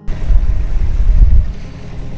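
Wind buffeting the microphone in gusts, a heavy low rumble that swells twice in the first second and a half, then eases.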